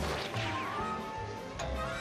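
Cartoon soundtrack: a crash sound effect right at the start, followed by a quick falling sweep, over background music.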